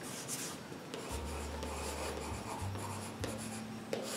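Chalk scratching on a small handheld chalkboard as a word is written, in a run of short strokes.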